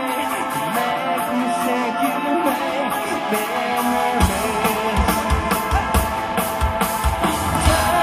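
A rock band playing live: guitar and singing at first, then the drums and bass come in about four seconds in with a steady beat.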